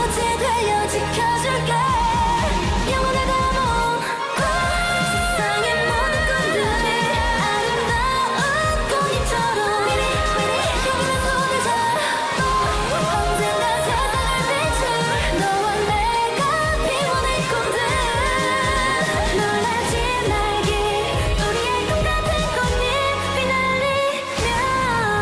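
K-pop dance-pop song performed live by a girl group: female voices singing over an electronic backing track. A fast, driving bass beat comes in about a second and a half in and runs under the vocals.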